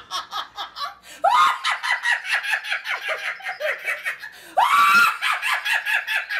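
A woman laughing hard in rapid ha-ha pulses, breaking into a high shriek of laughter about a second in and again near the end.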